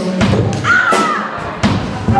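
Live blues band: several loud drum kit hits with a short gliding vocal line in between, the low bass mostly dropping out until near the end.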